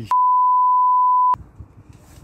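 Censor bleep: one steady 1 kHz tone lasting just over a second, with the rest of the sound cut out, covering a swear word. Faint background sound returns after it stops.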